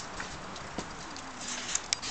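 Dogs' claws clicking on brick paving as mastiffs move about: a few scattered sharp clicks, the two loudest close together near the end.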